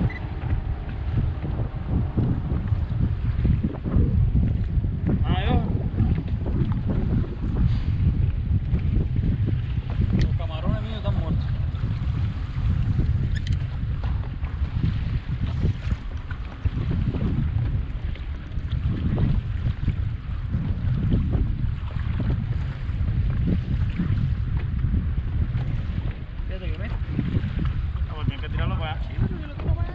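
Wind buffeting the microphone in a low, fluctuating rumble, with water slapping against the hull of a small open boat.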